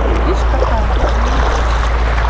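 Small sea waves washing onto a sandy shore, under a steady low wind rumble on the microphone.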